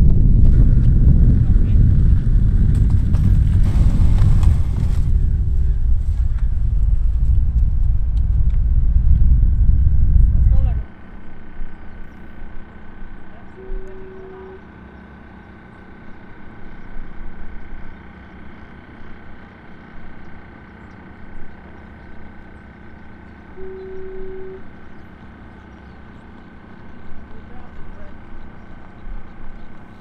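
Loud, even low rumble of wind buffeting the microphone for about the first ten seconds. It cuts off suddenly to a quiet outdoor background with a faint steady high tone. In the quiet part two short beeps come about ten seconds apart.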